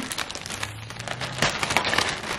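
Clear plastic zip-top bag crinkling and crackling as it is handled and packed, in irregular strokes that grow denser about a second and a half in.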